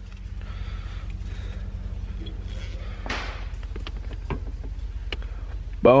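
A short-throw shifter being handled and set onto a T5 manual gearbox's shifter opening. Scattered light clicks and a brief rustle about three seconds in sound over a steady low hum.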